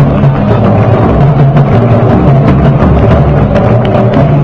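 A marching parade band playing a slow march: deep held notes over a beat of large drums and bass drums, with sharp drum strikes running through it.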